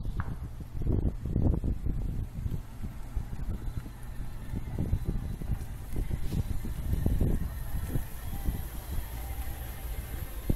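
Mercedes-Benz SL convertible rolling slowly into a driveway at low engine speed, with an uneven low rumble that swells and fades over it.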